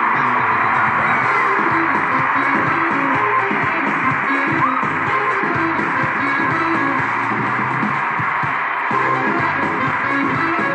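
Live pop music with guitar, heard through a television's speaker and playing steadily throughout.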